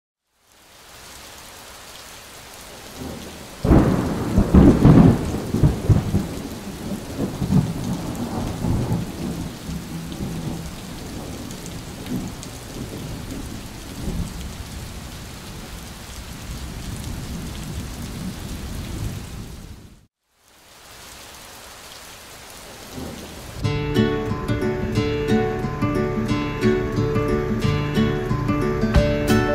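Steady rain with a loud clap of thunder about four seconds in that rumbles away over several seconds. After a brief break the rain goes on, and music starts near the end.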